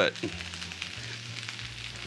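Fried rice and vegetables sizzling steadily on a hot flat-top griddle.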